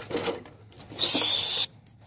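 A rat caught in a wire-mesh live trap gives one shrill squeal, about a second in, lasting just over half a second.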